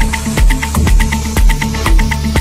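Afro house DJ mix playing, with a steady four-on-the-floor kick drum at about two beats a second and crisp hi-hat ticks between the beats.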